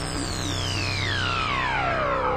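Electronic dance music at a breakdown with no beat: a synth sweep glides steadily down in pitch from very high to low over a held low bass drone.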